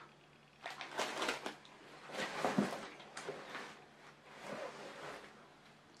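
Rustling and handling noises in a few bursts of about a second each: a plastic pack of baby wipes being put down and items being rummaged out of a bag.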